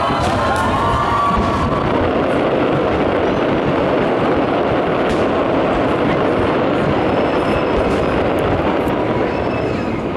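Distant fireworks display, with many bursts and crackles merging into one continuous rumble that eases slightly near the end.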